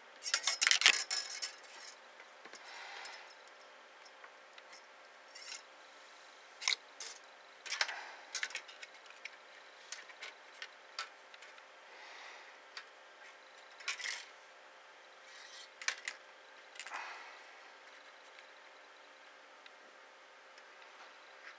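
0.8 mm copper wire being bent with small pliers and fingers against a sheet of paper: a quick run of clicks and scraping in the first second or two, then scattered sharp clicks and soft rubbing.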